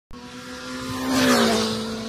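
A motor vehicle passing by at speed. Its engine note swells to a peak a little past halfway, then drops in pitch as it goes by, with a rush of air.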